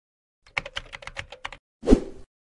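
Logo-intro sound effect: a quick run of about ten typing-like clicks, then a louder thump just as the logo lands.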